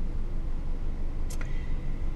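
Steady low rumble inside a car cabin, with a brief click about one and a half seconds in, followed by a short, thin, high beep.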